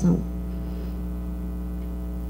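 Steady electrical mains hum in the sound system: a constant low buzz with a stack of evenly spaced tones above it. The tail of a spoken word is heard at the very start.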